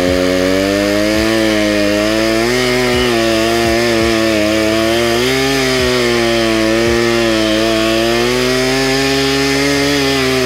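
Poulan 2150 two-stroke gas chainsaw held at full throttle while cutting into a 4x4, its engine pitch sagging and recovering as it labors in the cut. The chain is dull.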